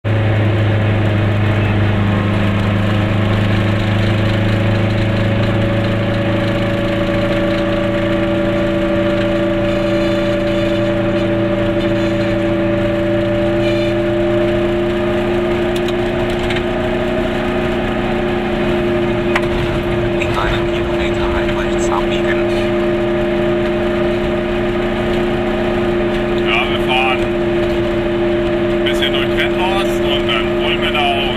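Goggomobil's air-cooled two-stroke twin-cylinder engine running steadily under way, heard from inside the small car; its pitch rises gently over the first several seconds as the car picks up speed, then holds even.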